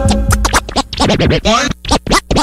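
DJ turntable scratching: a record pushed back and forth in quick, sweeping strokes with short gaps, taking over from the previous track's steady music about half a second in.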